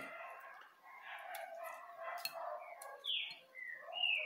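Birds chirping and chattering in the background, with a few short, clear falling calls near the end. A couple of faint clicks sound in between.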